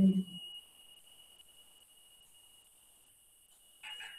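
A woman's drawn-out hesitation 'eh' trailing off in the first half-second, then near silence with a faint steady high-pitched whine and a brief soft noise near the end.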